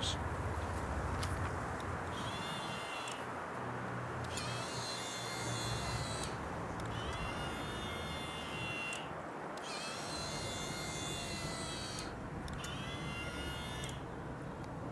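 Small electric motor of a SportsPan motorised pan head whining as it turns a 4.5 kg load of two house bricks. It runs in about five moves of roughly two seconds each, with short pauses between them, and the pitch rises slightly as each move starts.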